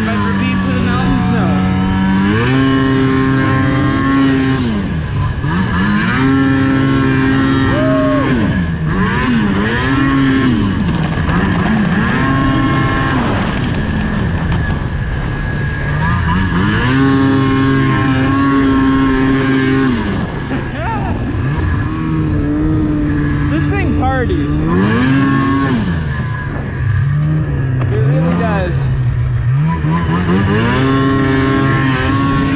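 Snowmobile engine being ridden hard on and off the throttle: its pitch climbs, holds high for a second or two, then drops back, over and over every few seconds.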